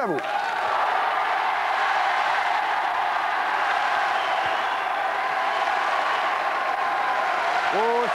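Studio audience applauding steadily, a sustained round of clapping that sets an applause meter, called 'un bel applaudissement'.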